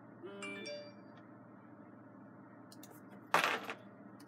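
A short chime-like tone lasting about half a second, then a brief, louder burst of noise near the end.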